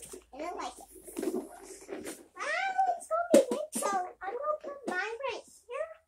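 A child talking in short phrases with brief pauses.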